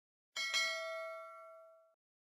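Notification-bell sound effect from a subscribe animation: a single bright chime about a third of a second in, ringing in several tones and fading away over about a second and a half.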